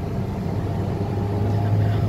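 Car engine and road noise heard from inside a moving car's cabin: a steady low hum over an even rush, growing a little stronger about half a second in.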